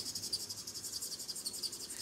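Bullet tip of an alcohol marker scratching quickly back and forth on paper as a stamped image is coloured in: a fast, even, high-pitched scratching rhythm.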